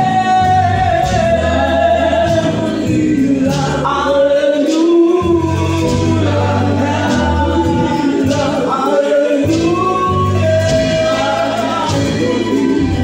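Gospel praise-and-worship song sung by a church congregation with instrumental accompaniment: long held sung lines over low bass notes that stop and restart.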